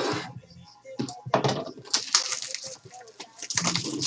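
Plastic shrink wrap on a trading-card box being slit with a blade and pulled off, crackling and crinkling in a run of short scratchy bursts.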